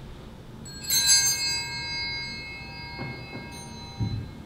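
Altar bells rung about a second in, a bright ring of several tones that dies away over a couple of seconds, followed by a fainter short ring near the end. A couple of soft knocks come in the last second.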